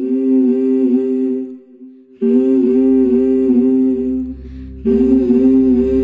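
Conch shell (shankha) blown in long, steady, slightly wavering blasts: one ends about a second and a half in, another starts around two seconds in, and a third starts about five seconds in.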